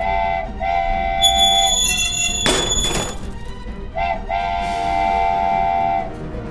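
Train horn sound effect blowing a chord, a short blast then a long one, repeated twice, with a loud burst of noise between the two pairs.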